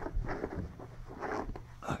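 Zip of a zippered hard-shell camera case being pulled open in several short, scratchy strokes.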